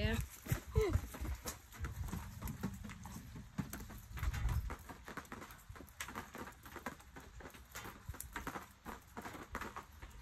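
Scattered raindrops tapping irregularly as a thunderstorm dies down, with low rumbling near the start and again in the middle.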